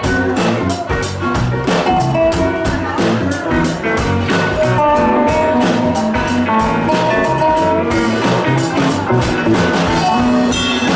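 Live roots-country band playing: drum kit keeping a steady beat under electric and acoustic guitars, upright bass and held melody notes.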